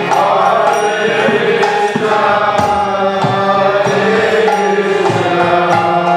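Devotional chanting: voices singing a mantra-like melody over steady held harmonium tones, with hand-drum strikes keeping time.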